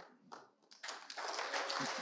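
An audience starts applauding about a second in, building quickly into steady clapping from many hands.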